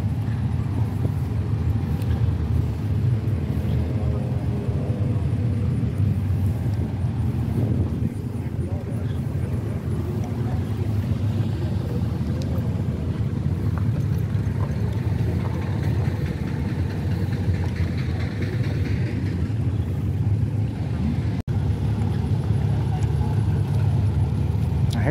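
A steady low engine rumble from an engine running close by, with faint voices in the background. The sound cuts out for an instant near the end.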